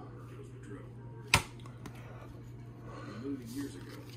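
Glossy chrome trading cards being handled, with one sharp click about a third of the way in, over a low steady hum.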